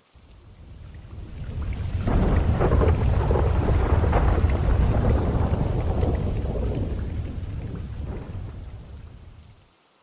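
A long roll of thunder with rain, swelling up over the first two seconds and dying away near the end.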